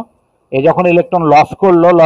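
Only speech: a man narrating, after a pause of about half a second at the start.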